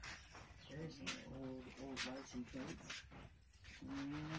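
Faint, indistinct talk of people in the background, with a few sharp clicks.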